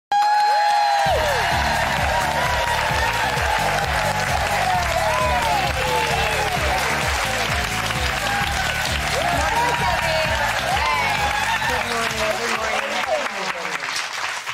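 A studio audience applauding and cheering over loud band music with a steady bass beat; the music comes in about a second in.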